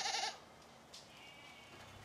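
A sheep bleating once: a short, quavering bleat that ends about a third of a second in. A fainter, thinner call follows about a second later.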